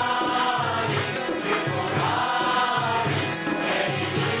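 A group of voices singing a devotional song in chorus, over a steady, evenly spaced percussion beat.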